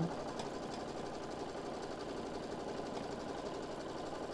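Baby Lock Visionary embroidery machine stitching through velvet at a steady pace, its needle running at about a dozen stitches a second.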